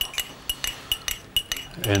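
Footsteps of several people walking across a gravel and concrete farmyard: a quick, irregular run of light clicks, several a second.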